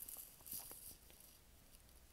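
Near silence: room tone with a faint hiss, and a few faint soft clicks in the first second.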